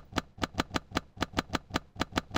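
A steady train of sharp clicks, about five or six a second: a recorded neuron's spikes made audible, each action potential a click, here standing for the V1 cell firing to the plaid's actual motion.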